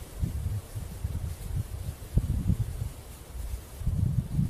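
Gusty wind rumbling on the microphone, with the rustle of a 3D leafy camouflage suit and hat as the leaf hat is pulled down over the head, and a brief knock about two seconds in.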